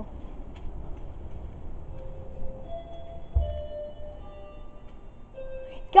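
Doorbell chime ringing a melody of several notes, starting about two seconds in; each note rings on and overlaps the next. A low thump comes about a second after the chime starts.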